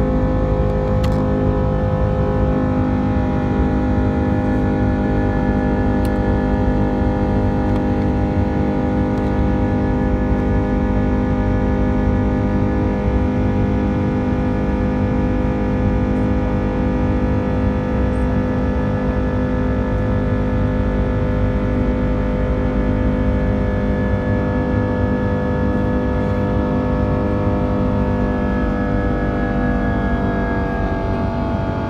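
Airbus A330-200's Pratt & Whitney PW4000 turbofan engines at climb power, heard inside the passenger cabin: a steady roar carrying several steady fan tones.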